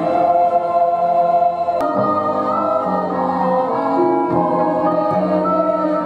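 Choir singing slow, long-held chords, the voices moving to new notes about once a second.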